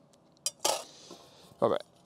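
Metal camping cutlery and a stainless steel cooking pot clinking as a cook kit is handled and packed: a sharp click about half a second in, then a short metallic clatter.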